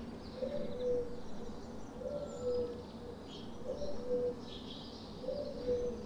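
A dove cooing: the same two-part phrase, higher then lower, comes four times at even spacing of under two seconds. Faint high twittering from swallows and other small birds runs over it.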